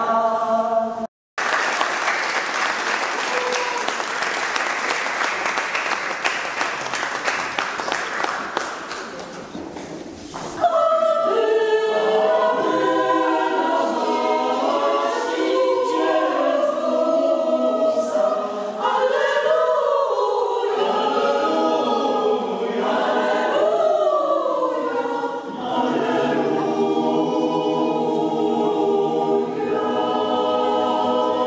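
A women's vocal group's song ends, and after a brief break applause follows for about nine seconds, fading out. Then a mixed choir of men's and women's voices starts singing and goes on to the end.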